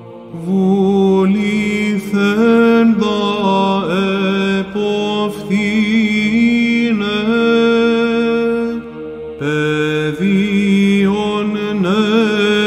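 Byzantine chant in Greek: a male chanter singing a slow, melismatic melody with ornamented glides over a steady held drone (ison). There is a brief pause for breath near the three-quarter mark.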